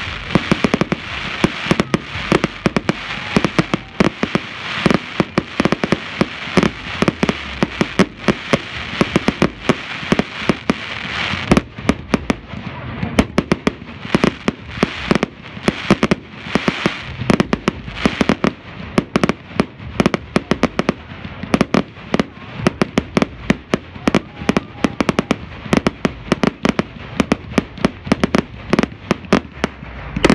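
Fireworks display: a rapid, continuous barrage of aerial shell bursts, several bangs a second, over a dense crackle of sparkling stars that thins out about eleven seconds in.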